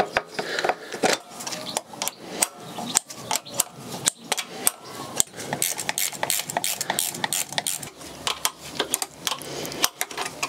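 Irregular metallic clicks, taps and rattles of hand tools and fittings as twin SU carburettors are bolted back onto a Rover V8's inlet manifold.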